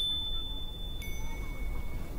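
Two ringing chime tones about a second apart, the second one lower in pitch, each struck sharply and left to ring, over a low steady rumble.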